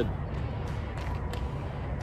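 Steady low outdoor rumble with a few faint clicks, with no clear engine note or voice.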